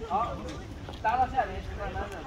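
Indistinct voices of people talking, in two short stretches, over a low rumble of wind on the microphone.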